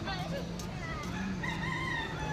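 A rooster crowing, its call rising and then held as a long drawn-out note in the second half.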